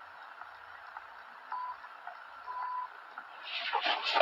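Two short electronic beeps on one high pitch, the second longer, over faint background hiss. Near the end comes a swelling rush of noise as a person starts jumping about on the floor of a motorhome.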